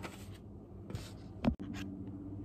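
Soft scraping and tapping as a paper card and small plastic paint bottles are handled on a wooden tabletop, with one thump about one and a half seconds in.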